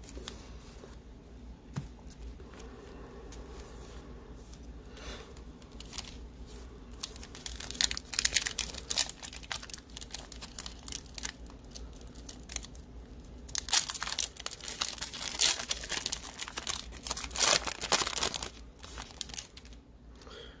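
Foil wrapper of a football trading-card pack crinkling and being torn open by hand, in sharp crackling spurts through the second half. The first several seconds hold only quieter handling of the stacked packs.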